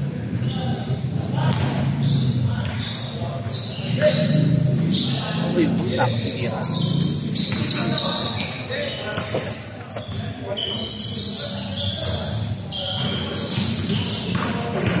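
Basketball bouncing repeatedly on the court floor during a pickup game, the thuds ringing in a large hall, with players' voices throughout.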